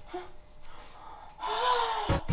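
A man's breathy, voiced gasp near the end, after a mostly quiet stretch.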